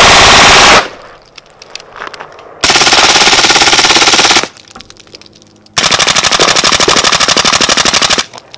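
Three full-auto magazine dumps from 9mm submachine guns, each a fast unbroken string of shots. The first, from a B&T APC9K, ends about a second in. A suppressed gun (B&T APC9SD or HK MP5SD) fires for nearly two seconds starting about three seconds in. The other suppressed gun fires for over two seconds starting near six seconds.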